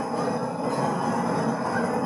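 A steady, low-pitched noise with no speech, from an unidentified background source.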